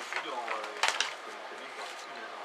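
Speech: a voice talking briefly in the first second, then low steady background noise.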